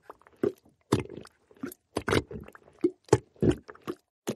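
Cartoon quicksand sinking sound effect: a run of short, irregular gurgles and pops as a character goes under.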